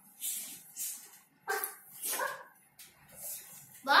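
A young child imitating an animal, making about five short yips and whimpering noises, as a fox drinking at a well.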